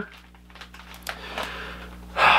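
Quiet room tone with a steady low electrical hum, and a few faint clicks and rustles of something being handled about a second in.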